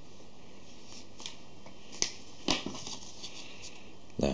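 Thin card being handled, giving a sharp crackle about two seconds in and a short rustle half a second later, with a few faint crackles after, over a steady hiss.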